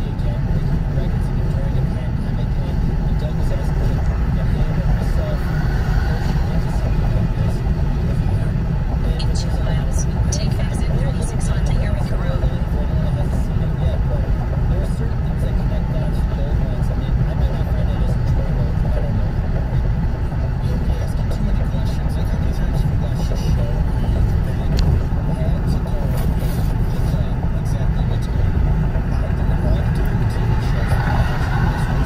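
Steady road and engine noise heard inside a car cabin while cruising at highway speed: a constant low rumble with no sudden events.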